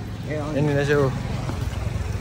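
A steady low engine hum, with a person's voice speaking briefly over it about half a second in.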